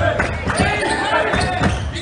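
Basketball being dribbled on a hardwood gym floor, several bounces, over indistinct chatter from spectators.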